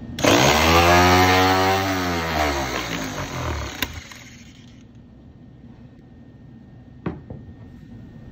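Trumpf C160 cordless double-cut shear running and cutting through a sheet-metal channel: a loud motor whine with a hiss of shearing metal, its pitch sinking over the last second or so before it stops about three and a half seconds in. A sharp click follows, and a short knock later on.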